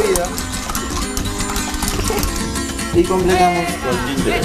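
Background music with plucked acoustic guitar, and a brief voice near the end.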